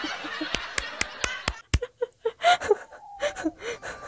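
A woman laughing hard, in short breathy snickers and squeaky bursts. In the first two seconds there is a quick run of about six sharp knocks.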